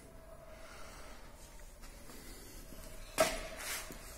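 Faint steady room tone, then a little past three seconds a sudden short rush of noise close to the microphone, followed by a softer one about half a second later.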